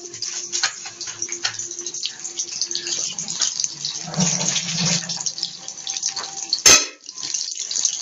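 Batter-coated kebab frying in hot oil in a small pan, sizzling and crackling steadily. A single sharp knock sounds near the end.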